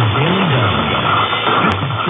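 Long-distance mediumwave AM reception of CKDO on 1580 kHz: music coming through muffled and narrow-band under a layer of noise, with a melody line gliding up and down. A brief tick near the end.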